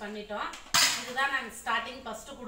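A large aluminium cooking pot clanks once against the floor about a second in, with a short ring after the knock.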